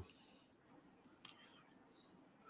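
Near silence: room tone, with a few faint short ticks about a second in.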